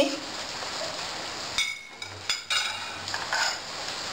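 Diced tomato being tipped into a metal pot of hot oil for a sofrito: a low steady hiss of frying with a few sharp clinks and knocks of a plate against the pot about halfway through.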